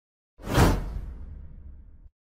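A whoosh sound effect for an animated transition: it swells in suddenly about half a second in, with a deep rumble underneath, and fades away over about a second and a half.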